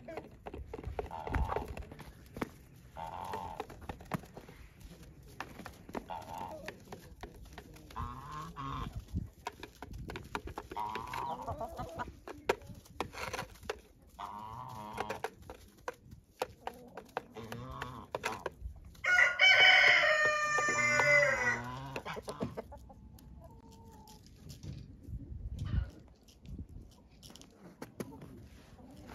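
Farmyard poultry calling: scattered short calls, and about 19 seconds in one loud call lasting about two and a half seconds, a rooster crowing.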